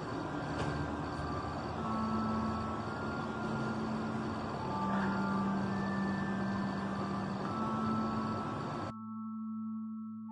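A steady rushing hiss with held low drone tones that shift in pitch every few seconds and a faint high pulsing tone. The hiss cuts off suddenly about nine seconds in, leaving only the sustained tones.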